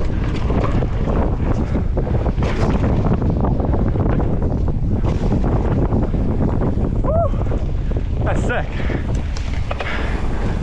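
Wind noise buffeting the camera microphone as a mountain bike rolls down a dirt jump trail, with tyre noise on damp dirt and short knocks and rattles from the bike over bumps. A brief high sliding squeak comes about seven seconds in.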